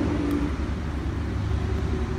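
A motor running: a steady low rumble with a steady hum above it that drops back about half a second in.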